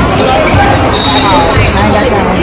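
A basketball bouncing on a gym court, with dense low thuds under nearby people talking. A short, thin, high tone lasts about half a second, starting about a second in.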